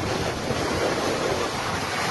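Typhoon wind and driving rain: a dense, steady rush of noise, with gusts buffeting the microphone in an irregular low rumble.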